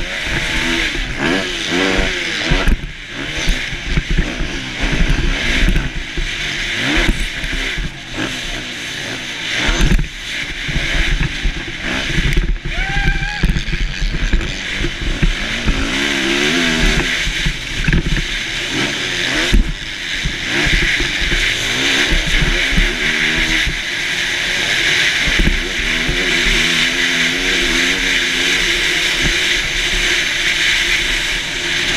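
Motocross dirt bike engine revving up and falling off again and again as the rider accelerates and backs off around the track, heard from a helmet camera with wind rushing over the microphone. Sharp thuds from bumps and landings break in now and then.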